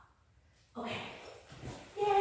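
Dog whimpering briefly, starting about three-quarters of a second in and fading, with a second small sound just before the end.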